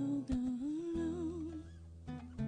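A voice humming a wordless, wavering melody over acoustic guitar. A low guitar note comes in about halfway through and rings under it.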